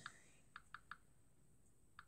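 Faint taps on a tablet touchscreen: a few short clicks, three of them in quick succession about half a second in, and another near the end.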